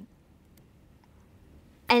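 Near silence: faint room tone in a pause between spoken phrases, then a woman's voice resumes near the end.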